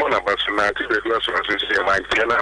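Speech only: a voice talking on a radio talk-show broadcast.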